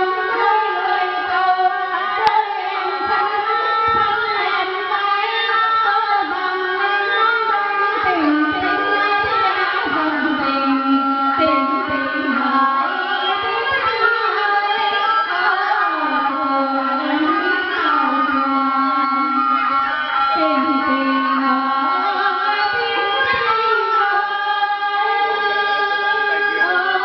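Two women singing a Vietnamese song into handheld microphones, in long held notes that bend and slide in pitch, without a break.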